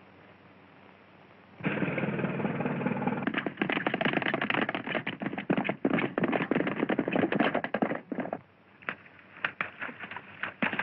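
A horse's galloping hoofbeats that start suddenly and loudly about a second and a half in, after faint film hiss, then thin out to scattered hoof strikes near the end.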